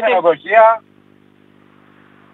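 A man's voice over a telephone line for under a second, then a faint steady hum with light hiss on the line.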